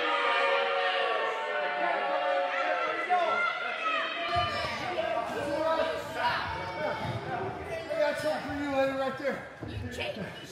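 Music plays through the hall for about four seconds, then cuts off abruptly to people talking and crowd chatter in a large, echoing gym, with a few thumps.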